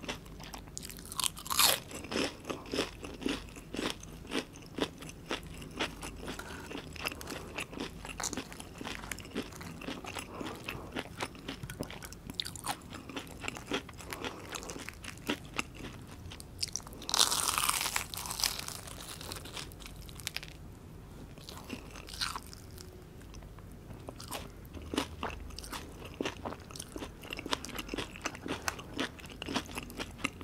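Biting into and chewing breaded, fried mozzarella onion rings: the crisp breadcrumb crust crunches with each chew. There is one long, loud crunch about seventeen seconds in, and a quieter spell of chewing a few seconds after it.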